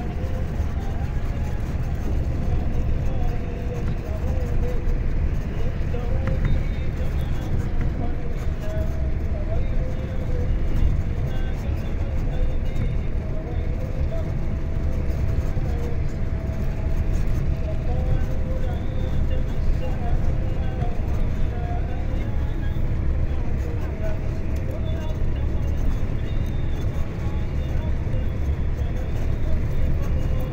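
Steady low road and engine rumble inside a moving vehicle driving along a highway, with a faint voice wavering underneath it.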